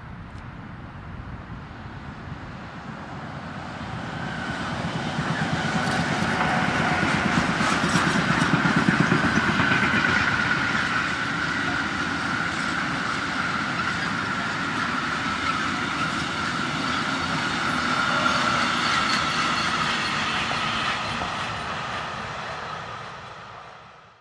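A freight train passing: a BR 185 Bombardier Traxx electric locomotive hauling container wagons. The wheels on the rails build to their loudest as the locomotive goes by about eight or nine seconds in, then the wagons run past with a steady high tone, and the sound fades near the end.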